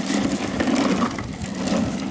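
Plastic wheels of a child's ride-on toy rolling over paving, a steady gritty rolling noise.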